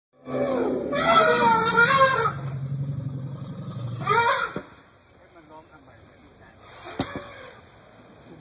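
A person's voice calling out in long, drawn-out exclamations for about two seconds, then once more briefly about four seconds in, over a low steady rumble. After that it goes quieter, with a single sharp knock near the end.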